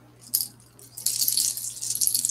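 A multi-strand beaded necklace with shell charms rattling and clicking as it is handled: one click about a third of a second in, then a continuous clatter of beads and shells from about a second in.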